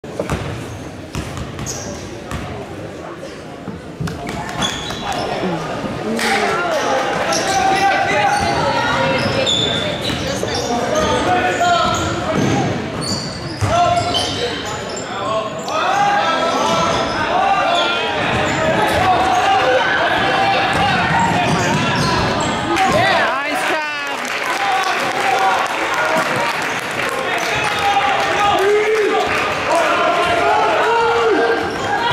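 A basketball bouncing on a hardwood gym floor during play, with players and spectators talking and calling out, echoing in a large gymnasium.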